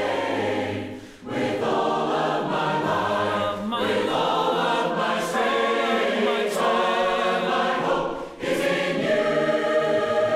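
A church congregation singing a hymn a cappella in several voice parts. The singing comes in phrases, with short breaks about a second in and again near the end.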